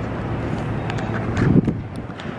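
Wind rumbling on the microphone over steady outdoor background noise, with a short louder thump about one and a half seconds in.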